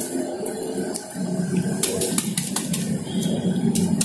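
Scattered crackles and rustles of dry planting mix (burnt and fermented raw rice husk with bamboo-leaf humus) stirred by hand in polybags. The mix is still loose and porous, not compacted, after heavy rain.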